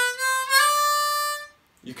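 C diatonic harmonica playing the 4-hole draw note with an inflective bend: the pitch slides up into the note as the bend is released, then the note is held for about a second before stopping.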